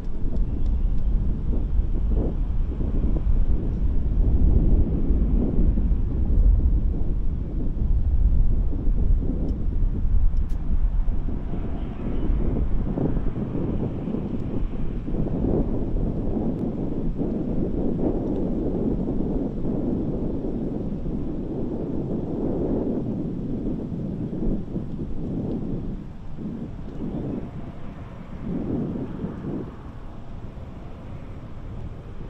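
Continuous low outdoor rumble that swells and ebbs and grows gradually quieter near the end.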